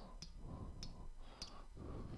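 Three faint, light clicks about 0.6 s apart as the on-screen calculator's keys are pressed with the pointer.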